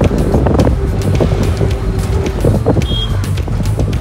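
Riding in an auto-rickshaw: the engine rumbles along with road noise and wind on the microphone, under background music.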